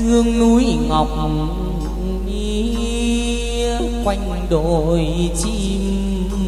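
Chầu văn ritual music: a long melismatic vocal line held on slowly gliding, wavering notes, accompanied by the đàn nguyệt (moon lute).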